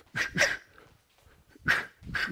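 A boxer's short, sharp exhales through the mouth, one with each punch while shadow boxing: two quick ones close together, then another near the end.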